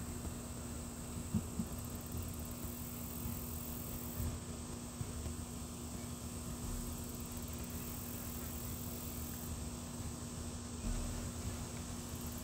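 Quiet outdoor background: a constant faint hiss with a steady low hum running throughout and an uneven low rumble, plus a couple of small clicks about a second and a half in.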